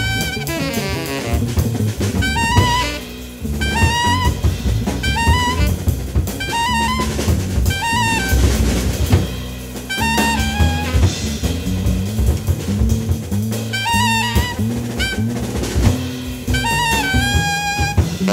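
Live jazz: a tenor saxophone solos in short, repeated phrases over electric bass guitar and a drum kit.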